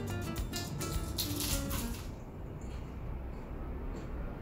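Background music of short, separate notes with crisp clicks among them, which stops about two seconds in and leaves only a low hum.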